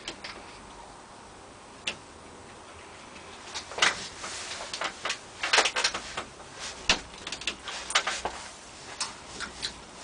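Mouth and handling noises of someone tasting hot sauce from a spoon. A few isolated clicks come first, then from a few seconds in a busy, irregular run of short smacks and clicks.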